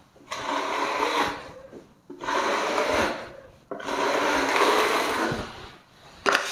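Steel finishing trowel scraping across a wall coated with gypsum plaster, in three long sweeping strokes of about a second and a half each, with short gaps between them.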